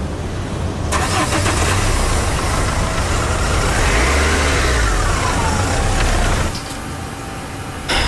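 Renault Kangoo van's engine starting and running, with a whine that falls in pitch over a couple of seconds; the sound drops away abruptly about six and a half seconds in.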